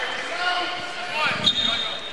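Basketball gym ambience at the free-throw line: a low murmur of crowd and player voices in a large hall, with a basketball bounced on the hardwood floor. A brief, steady high-pitched tone comes in near the end.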